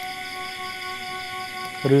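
Soft background music of slow, held notes over a steady high chirring of night insects. A man starts speaking near the end.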